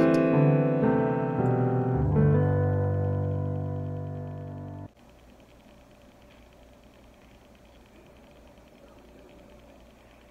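Casio digital piano playing the song's closing chords: three chords struck in the first two seconds or so, left ringing and fading, then cut off abruptly about five seconds in. Faint room tone follows.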